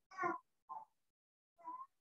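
A cat meowing faintly three times in short calls, the first the longest.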